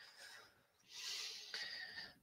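A faint, short breath from a person, taken about a second in, in an otherwise quiet gap in the talk.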